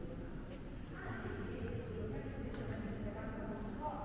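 Faint, indistinct voices murmuring over a low, steady room hum.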